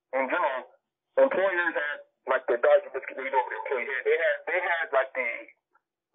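Speech only: people talking in conversation.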